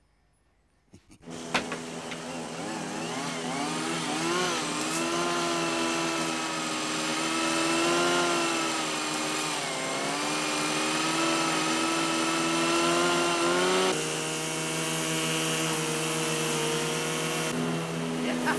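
Small petrol engines of garden machinery, a wood chipper among them, start abruptly about a second in and run loudly, their pitch rising and falling as they rev.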